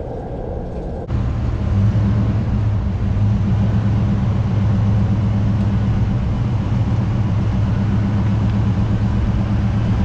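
Steady low drone of a Nissan vehicle on the move, tyre and road noise mixed with engine hum, heard close to the spinning wheel; it starts abruptly about a second in.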